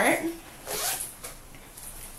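A zipper on a small fabric crossbody bag being pulled open in one quick zip a little under a second in, followed by faint handling of the bag.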